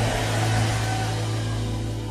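A sustained background keyboard chord, its low note held steadily, over an even wash of congregation noise.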